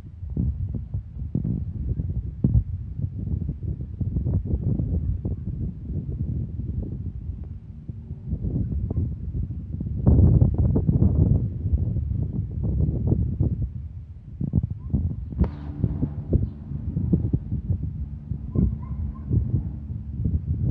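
Wind buffeting the microphone outdoors: a steady low rumble with irregular thumps and gusts, the strongest gust about ten seconds in.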